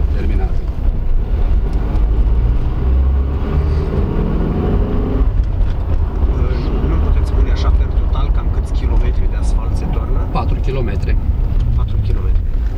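Car engine and road rumble heard from inside the cabin of a car driving slowly along a village street: a steady low drone.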